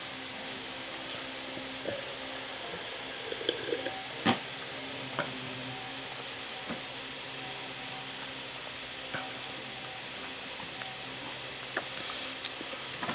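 Steady background hiss with a faint low hum, broken by a few light clicks and knocks, the sharpest about four seconds in.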